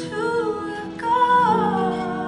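A woman singing a slow song into a microphone, holding long notes; about a second in a new note starts and glides downward.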